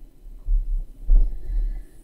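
Low dull thumps and rumble from the work table as a drill pen and drill tray are handled on a diamond painting canvas, loudest about half a second in and again just after a second.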